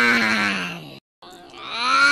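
A long, drawn-out yawn sound effect in a cartoon voice. Its pitch slides down and fades out about a second in, and after a short silence the same yawn starts again.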